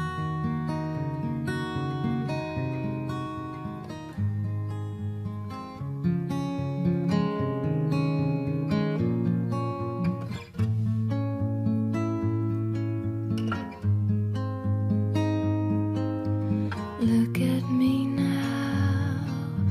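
Instrumental passage of a song: strummed and picked acoustic guitar, with chord changes every second or two.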